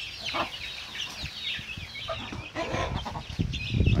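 A brood of gigante negro chicks peeping continuously in many short, high, falling cheeps while they peck at feed, with a hen clucking now and then. It grows louder near the end.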